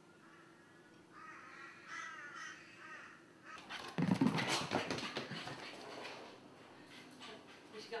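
A few faint repeated calls, then from about three and a half seconds in, louder scuffling and clattering as a dog runs about after a balloon on a rug and wooden floor.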